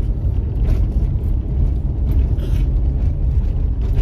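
Steady low rumble of a car's road and engine noise, heard inside the cabin.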